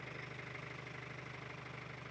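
A vehicle engine idling steadily, a faint, even low hum.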